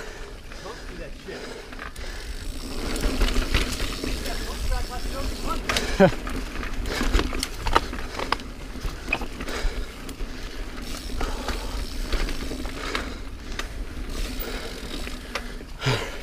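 Niner Jet 9 RDO mountain bike riding over dirt singletrack: tyre noise on the trail with the chain and frame rattling over bumps, and wind rumbling on the camera microphone.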